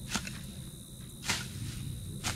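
A small hand hoe chopping into soil to dig up peanuts: two strokes about a second apart, the second louder.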